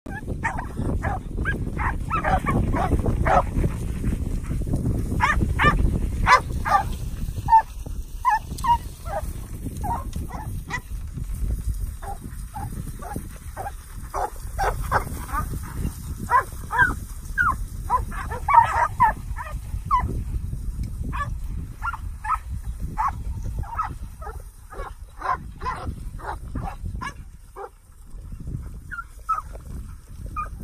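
Bay dogs barking over and over in short, quick barks while baying a bunch of cattle, with a brief lull near the end.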